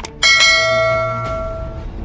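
A bright bell-chime notification sound effect strikes once, just after a click, and rings out, fading over about a second and a half, over background music.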